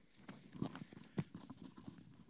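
Faint, scattered small knocks and rustles of a lecturer handling his notes, the loudest knock about a second in.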